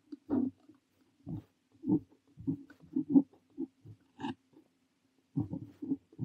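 Parker 45 fountain pen nib scratching on notebook paper in short, separate strokes as Korean characters are written, close up, with a short pause near the end.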